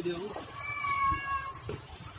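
A cat's high, thin mew, held for about a second from about half a second in, faint beside a low voice that trails off at the very start.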